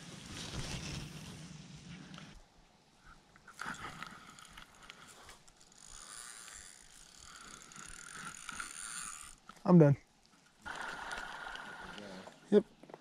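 Spincast fishing reel being cranked, a whirring gear sound in stretches with short pauses. A brief voice sounds near the end.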